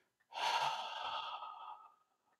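A man's long audible breath between phrases of speech, starting about a third of a second in and fading out after about a second and a half.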